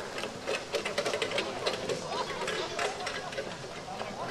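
A trotting harness horse and its sulky passing close by on grass: a quick, irregular run of clicks and knocks from hooves and harness, with spectators talking in the background.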